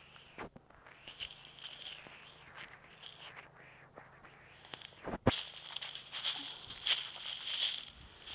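Footsteps through grass, dry dead leaves and twigs, with irregular crackling and rustling and one sharper snap or knock about five seconds in.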